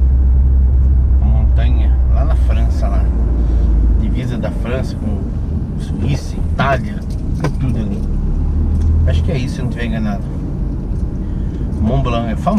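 A car's engine and road drone heard from inside the cabin. It is steady and strong for the first four seconds, drops away after that, then swells briefly again later, with bits of a man's talk over it.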